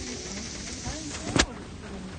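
Steady rush of rain falling outdoors, with one sharp knock about one and a half seconds in.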